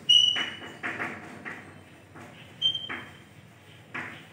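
Chalk writing on a blackboard: a series of taps and scrapes as letters are written, with a couple of brief high squeaks from the chalk.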